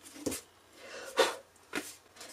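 Large soft brush sweeping eraser crumbs off watercolor paper in three short swishes, the loudest a little past one second in; the spiral pad is shifted on the table near the end.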